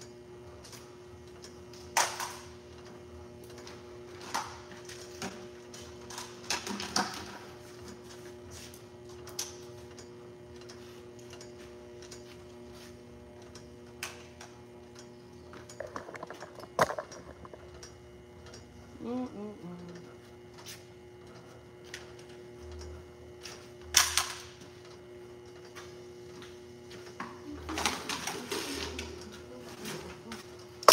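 Steady hum of an automatic labeling machine standing powered on, with irregular clicks and knocks of parts being handled; the sharpest knocks come about two seconds in and near the three-quarter mark.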